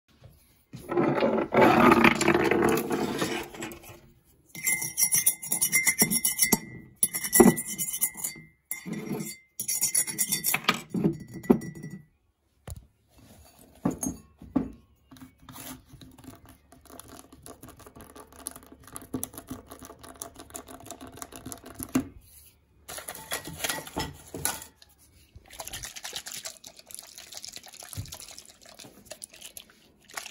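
A string of close-miked ASMR handling sounds from small objects on a wooden desk: loud scratching and crackling at first, then, from about halfway in, quieter sharp clicks of an old mobile phone's keypad buttons being pressed.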